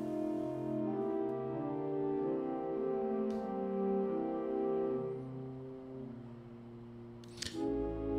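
Soft, slow pipe-organ music of held chords that change every second or so, fading down after about five seconds and stopping just before the end. There is a light click about three seconds in.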